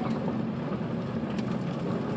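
Car tyres rolling over a gravel road, heard from inside the car: a steady low rumble with a few faint ticks of gravel.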